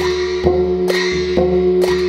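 Traditional ensemble of hand cymbals, hand drum and gongs playing a steady beat, with the cymbals clashing about twice a second over a steady ringing tone and a low drum.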